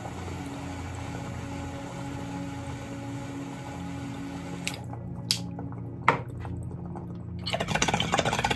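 Water bubbling in a bong as vapor from a Lotus vaporizer is drawn through it in a slow sip, over steady background music, with a few light clicks about five to six seconds in.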